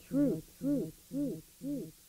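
A man's voice through an echo effect: the word "truth" repeats as a fading "-ooth" about twice a second, each repeat quieter than the last.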